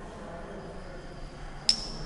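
One sharp glass clink about one and a half seconds in, a glass test tube knocking against glassware, followed by a short high ring.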